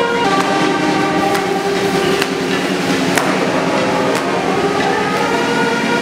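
Brass band music with held, chord-like notes and a drum struck about once a second.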